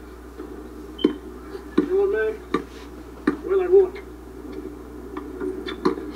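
A basketball bouncing on an outdoor court: a handful of sharp knocks, roughly one every second. Faint voices of the players are heard between them.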